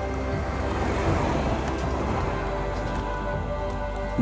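Background music of steady held tones, with a rush of road noise that swells about a second in and fades away as a large truck passes on the highway.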